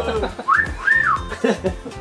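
Two short whistled notes, each sliding up, holding briefly and sliding back down, about half a second apart.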